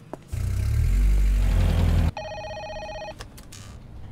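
A car engine runs loud and low, rising slightly as the car pulls away, then cuts off abruptly about two seconds in. A telephone then rings with a pulsing electronic trill for about a second.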